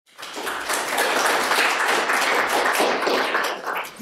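Audience applauding: a dense, steady patter of hand claps that dies down near the end.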